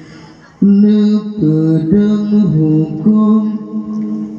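A man singing an Acehnese qasidah solo, unaccompanied, in long held notes that step between pitches. A held note fades away, and a new phrase starts loudly about half a second in.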